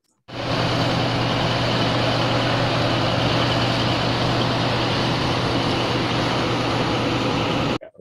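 Oil drilling rig machinery running: a loud, steady industrial din with a low, even drone under it, a high noise level for the crew working beside it. It starts abruptly just after the start and cuts off suddenly near the end.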